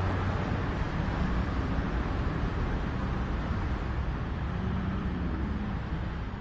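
Steady outdoor rumble with a faint low hum under it.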